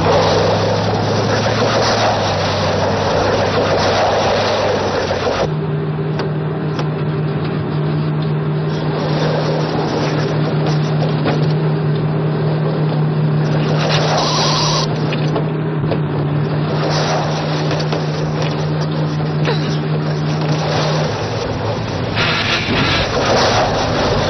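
Vehicle engines running on a TV action-scene soundtrack. A steady engine drone changes pitch about five seconds in and drops away near the end.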